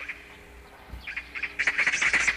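Birds chirping: a quick run of short chirps in the second half, growing louder, over a faint steady background.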